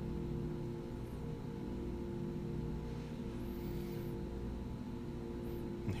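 Steady room hum: a constant low rumble with a few fixed humming tones and no other events.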